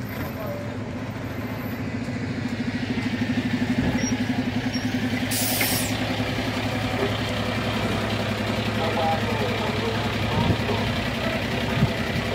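Military light truck's engine running at low speed as it pulls a trailer, with a steady throbbing hum that gets louder a couple of seconds in. A brief hiss comes about five and a half seconds in.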